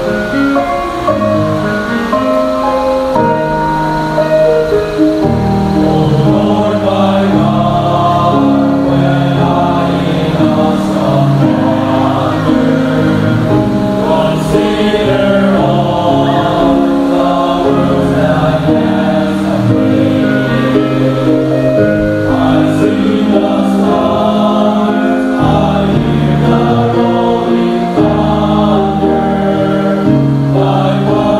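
A choir singing a hymn in several parts, in sustained chords.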